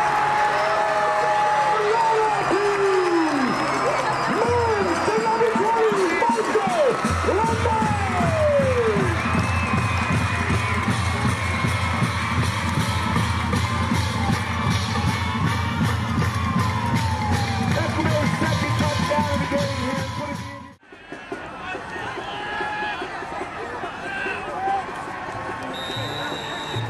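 Crowd cheering and yelling at a high school football game, with music playing under it. The music holds sustained low notes through the middle. About 21 seconds in, everything drops out suddenly and comes back quieter.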